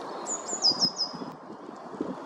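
A small bird calling: a quick series of about five high, thin notes, each sliding downward, over a steady low rumble of background noise.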